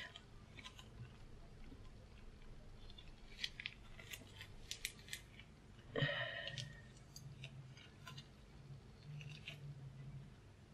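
Faint clicks and rustles of items and packaging being handled inside a cardboard subscription box, with one louder, short rustle about six seconds in.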